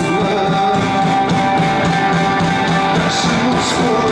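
Rock band playing live through a PA, with electric guitars over bass and drums, steady and loud.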